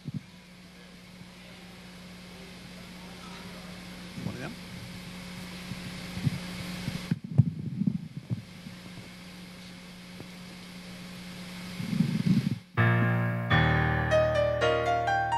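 A steady low electrical hum under a slowly growing murmur of voices in a large hall, with a few short bursts of voice. Near the end a keyboard comes in playing chords.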